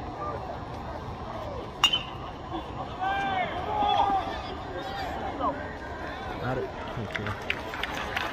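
Sharp ping of a metal baseball bat striking the ball about two seconds in, over the chatter of spectators in the stands; the crowd's voices rise just after the hit.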